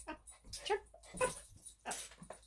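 Small dog whimpering in a few short sounds as it comes up to be held, with a woman's voice alongside.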